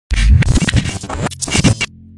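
Digital glitch sound effects: loud, choppy stutters of distorted noise and bass that cut off suddenly near the end, leaving a low steady tone.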